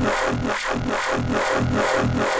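Serum software synthesizer playing a held note of a growl bass patch. Its pitch stays steady while the tone pulses about four times a second as LFO 1 sweeps the cutoff of a high-peak filter.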